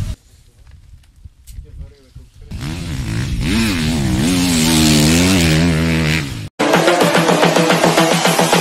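A motocross bike's engine revving up and down for about four seconds as the rider works the throttle through a corner. It cuts off suddenly and rhythmic electronic music starts.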